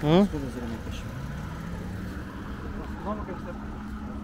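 Steady low rumble of a motor vehicle, with a faint hum that rises slightly in pitch over the first couple of seconds. A short 'hmm?' at the start and a brief voice about three seconds in.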